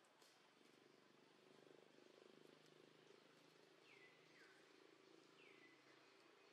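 Near silence: faint outdoor ambience with a faint low steady drone, and three short bird whistles falling in pitch, two close together near the middle and one near the end.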